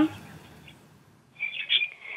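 A small bird chirping in the background of a telephone line, a short run of high chirps starting a little past halfway.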